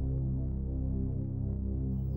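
Low, steady drone of background music: sustained deep tones held without a break.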